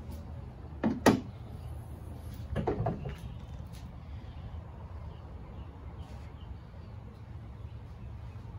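2005 Jaguar S-Type R hood being opened: a sharp double click of the hood latch releasing about a second in, then a clattering as the hood is lifted and propped a couple of seconds later, over a steady low hum.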